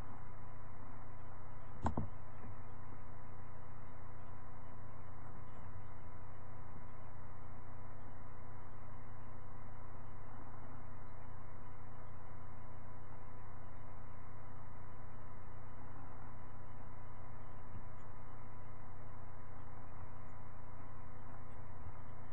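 Steady electrical hum with several faint steady tones, unchanging throughout, and a single sharp click about two seconds in.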